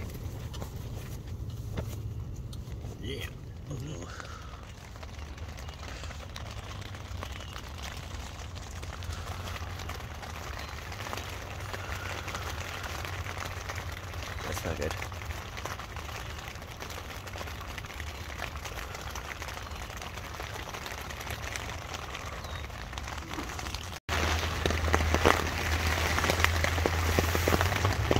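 Rain falling steadily on a tent's rain fly, heard from inside the tent as a continuous hiss, which gets louder near the end.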